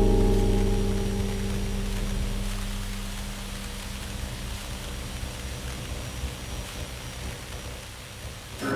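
Deep, gong-like ringing of a large metal stockpot: a cluster of low steady tones fading slowly over several seconds while a hiss like rain comes up beneath them.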